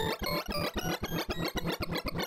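Sorting-algorithm sonification from the ArrayV visualizer: a rapid stream of short synthesized beeps, several a second, jumping up and down in pitch. Each beep's pitch follows the value of the array element being compared or swapped as Surprise Sort works through a sawtooth-ordered input.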